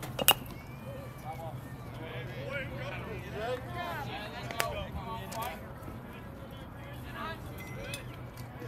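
A single sharp smack of the baseball at home plate just after the pitch, followed by distant voices of players and spectators calling out across the field, with a fainter click past the halfway mark.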